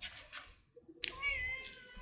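Tabby-and-white stray cat meowing once, about a second in: one drawn-out, high call that dips slightly in pitch. A brief rustling noise comes just before it.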